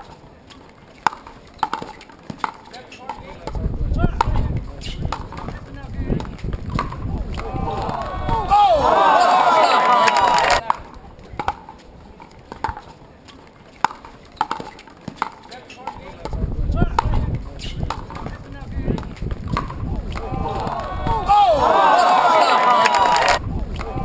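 Pickleball rally: sharp pops of paddles striking the plastic ball, at times about once a second. Twice a crowd breaks into cheering and shouting, about nine seconds in and again near the end; these are the loudest moments.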